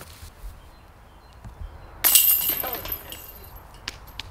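Glass shattering, a sudden crash about halfway through that dies away over about a second.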